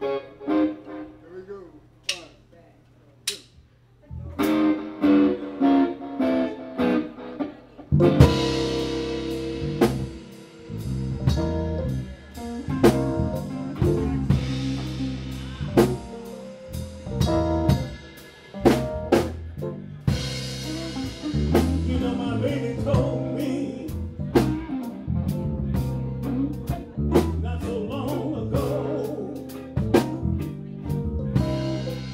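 Live band with electric guitar, bass and drum kit. A few sparse guitar notes lead into a guitar intro phrase, and the full band comes in about eight seconds in and plays a steady groove.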